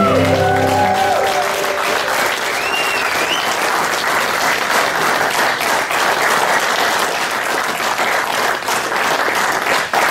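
Guitar music fades out in the first second or two, giving way to a crowd applauding steadily, with a few whistles a few seconds in.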